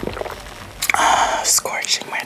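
A person's loud, breathy mouth sound over a teacup while sipping tea: a noisy rush lasting under a second about halfway through, in two pushes, then fading.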